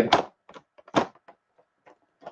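A few short, light knocks from a boxed Battle Cat toy being handled, its cardboard-and-plastic window box bumping against a hand, with the clearest knock about a second in.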